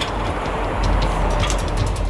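Steady low rumble of wind buffeting the microphone high on a steel bridge, with a few light metallic clicks in the second half from climbing harness gear on the safety line.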